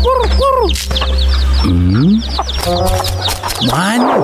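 Hens clucking and chicks peeping, a busy stream of short high cheeps throughout with a few lower drawn-out hen calls.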